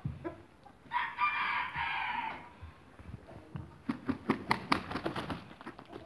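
A rooster crowing once, a held call of about a second and a half starting a second in, followed near the end by a rapid run of short, sharp clucks.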